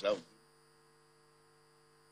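A few spoken words end just after the start, then a steady electrical mains hum with faint high whines remains.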